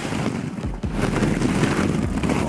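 Hollow plastic ball-pit balls clattering and rattling against one another in a dense, steady crackle as a person lands in a deep ball pit and sinks in among them.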